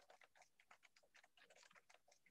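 Faint computer keyboard typing: quick, irregular key clicks, several a second, picked up through a video-call microphone.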